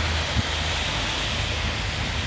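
Road traffic on wet asphalt: a steady hiss of tyres on the wet road surface over a low rumble, with a single faint click under half a second in.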